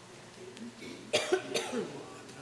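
A person coughing: two sharp coughs about a second in, trailing off in a short throaty sound.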